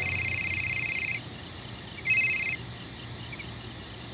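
Crickets trilling at night: a loud, rapidly pulsed high trill that stops about a second in and returns briefly near two seconds, with fainter chirping carrying on underneath.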